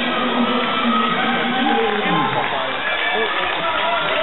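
Crowd of spectators in an athletics hall, many voices shouting and cheering over each other.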